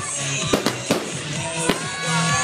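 Aerial firework shells bursting, several sharp bangs over loud music playing throughout.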